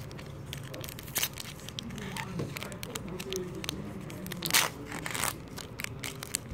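Pokémon card booster pack's foil wrapper crinkling and being torn open by hand, with a run of small crackles and a few louder rips, the loudest in the last second and a half.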